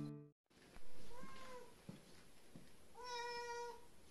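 A domestic cat meowing twice: a short meow about a second in, then a longer, steadier one near the end.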